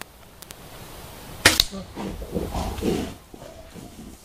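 A single sharp, very loud shot at a black bear about a second and a half in, followed by about a second and a half of low, rough sounds.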